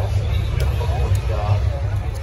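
Indistinct voices of people talking, over a steady low rumble.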